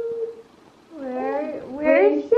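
Baby babbling: a long held vocal note that fades out about half a second in, then after a short lull a wavering, gliding squeal near the end.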